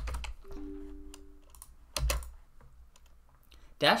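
Computer keyboard keystrokes as the sheet name is typed, a few quick clicks at the start, then a single sharper click about two seconds in.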